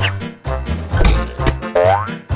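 Upbeat background music with a steady beat, and a cartoon boing effect rising in pitch near the end.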